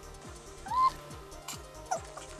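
A long-haired cat meows twice: a short rising meow about a second in, the loudest sound here, and a shorter falling one near the end. Under it runs fast electronic dance music with a steady kick drum.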